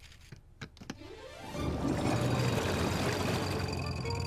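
A few light plastic clicks from Lego Technic gears, then a rising whirr about a second in that swells into a much louder, steady rushing noise with a low hum over the second half.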